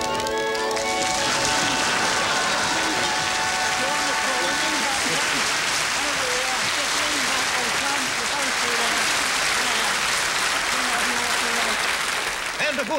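Studio audience applauding, mixed with audience voices, as held music notes die away in the first few seconds.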